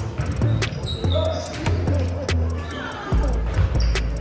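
A basketball bouncing on a hardwood gym floor, heard under background music with a heavy bass line that gets louder about three seconds in.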